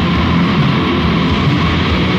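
Heavy metal music: distorted electric guitars over dense, fast drumming, with a high note held throughout.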